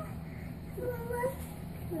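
A short, faint meow about a second in, rising and then holding its pitch, with a brief second one near the end.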